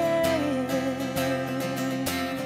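A woman singing a long held note over a strummed acoustic guitar.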